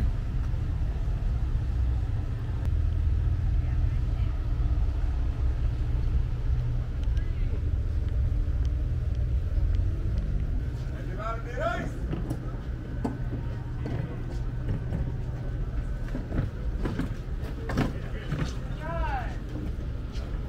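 Steady low rumble of an outdoor waterfront, with distant voices briefly heard about halfway through and again near the end.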